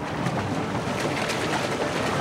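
Steady rushing noise of wind and surf.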